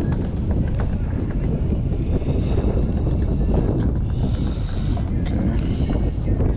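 Wind buffeting the camera microphone, a steady low rumble.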